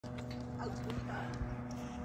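Steady low drone of a distant twin-engine turboprop airliner on approach, with a few brief wavering calls over it.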